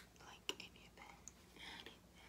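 A woman whispering faintly, with sharp clicks at the start and about half a second in.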